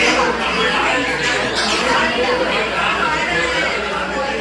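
Several people talking at once: overlapping, indistinct conversation among a group of guests in a room.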